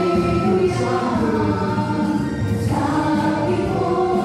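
A group of young women and men singing a Telugu Christian song together into microphones, amplified through a church sound system, with keyboard accompaniment.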